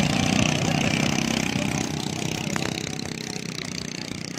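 Long-tail outboard engine on a wooden river boat running as the boat passes close by, fading steadily as it moves away.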